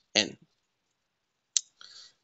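A man's voice ends a word, then silence broken by a single sharp click about a second and a half in, followed by a faint short noise near the end.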